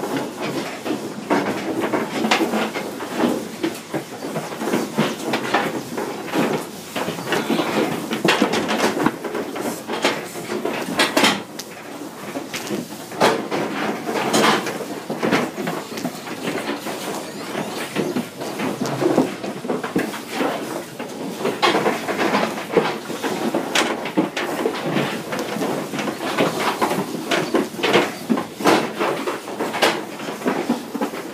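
Continuous irregular metallic clattering and knocking from a pig transport trailer, its metal floor, bars and panels rattling as the pigs inside shift about.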